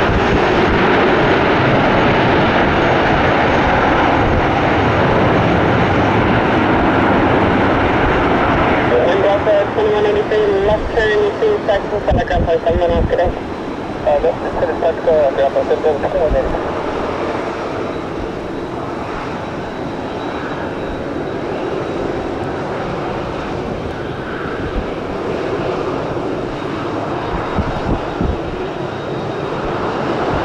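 Jet airliner engines running as the plane rolls along the runway: a steady roar that drops to a fainter level about halfway through. A voice is heard over it for several seconds in the middle.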